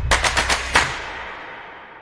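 Electronic logo-intro sting ending: a rapid run of sharp percussive hits, about eight a second, through most of the first second, then a ringing tail that fades away.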